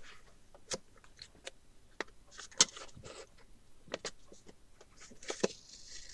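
Folded paper sheets rustling and crinkling with scattered light clicks and taps as hands work needle and thread through them to sew a book's signatures. Two short, louder rustles stand out, about two and a half seconds in and near the end.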